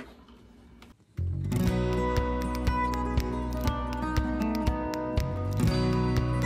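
Background music, a guitar piece with a steady beat, starting suddenly about a second in after a brief quiet moment.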